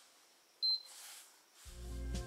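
Induction cooktop's touch control giving one short, high beep about half a second in. Background music with a low bass comes in near the end.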